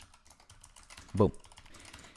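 Computer keyboard typing: light, scattered keystroke clicks as code is entered.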